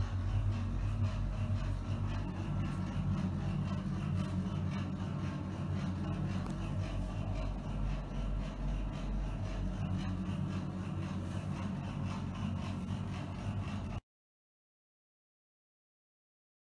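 A steady low machine hum that cuts off abruptly near the end.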